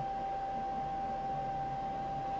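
A steady high-pitched tone over faint hiss, unchanging throughout, with no other sound.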